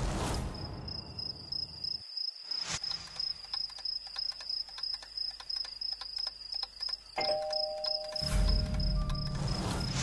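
Crickets chirping in a steady, pulsing high trill. About seven seconds in, a doorbell button is pressed and a doorbell chime rings, and music with a deep bass comes in near the end.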